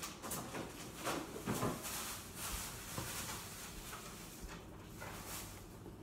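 Soft, irregular wiping and squishing strokes as foamy shaving-cream slime mixture is scraped off into a bowl, fading out toward the end.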